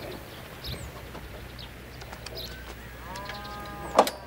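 Village ambience: small birds chirping on and off, and a chicken giving one drawn-out call of about a second near the end. A sharp click comes right at the close.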